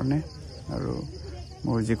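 A steady, high-pitched chorus of night insects, unbroken under a man's quiet speech, which drops out for about a second and a half in the middle.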